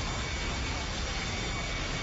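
Steady rushing noise of a burning tanker truck being fought with high-pressure fire hoses, with fire engines standing by. A faint rising whine begins near the end.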